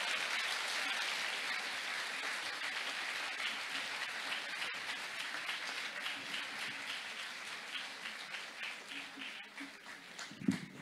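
Audience applause. It is full at first and thins out gradually, with single claps standing out more toward the end.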